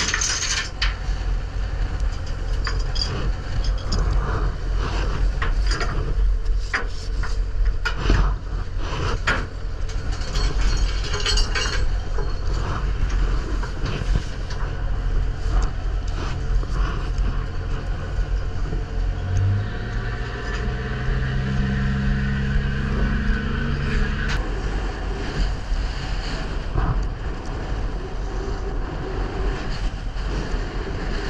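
A fishing boat's deck: a steady low engine drone with scattered rattles and knocks from the seine rope running out through a stern block. A low hum with overtones comes in about two-thirds of the way through and stops a few seconds later.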